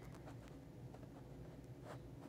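Quiet small-room tone with a low hum, a few faint soft ticks, and a brief soft hiss near the end.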